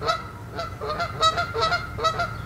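Canada geese honking in a quick series of short calls, several each second.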